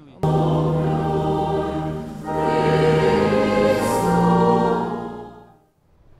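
Church choir singing a hymn in long held notes. It comes in suddenly, steps up in pitch about two seconds in, and fades out shortly before the end.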